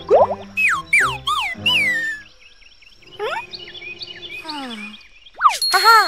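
Playful cartoon music with sliding-tone sound effects: a quick rising swoop, then four falling boing-like swoops in the first two seconds. More wobbling rising and falling tones follow midway, and another fast swoop comes near the end.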